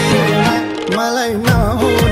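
Music from a Nepali folk-style romantic song: an ornamented melody with sliding notes over a drum beat, with a heavy drum hit about one and a half seconds in.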